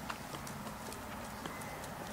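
Footsteps on a paved path: sparse, irregular light taps of shoes on hard ground over a low steady rumble.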